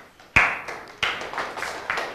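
Several people clapping by hand in a room, starting suddenly about a third of a second in and picking up again with a fresh burst about a second in.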